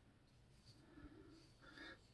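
Near silence: room tone, with a couple of faint soft sounds about a second in and near the end.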